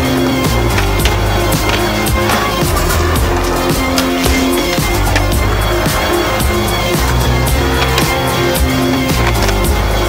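A music track with a steady beat and bass line, mixed with the sounds of skateboards rolling on pavement and boards clacking.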